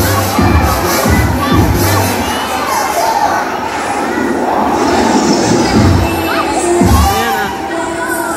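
A large crowd of children shouting and screaming excitedly, many voices at once. A bass beat from background music runs under it for the first couple of seconds and again near the end.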